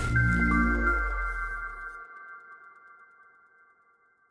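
Outro logo sting: a low boom that dies away within about two seconds, under a chord of high, bell-like chimes that rings on and slowly fades out.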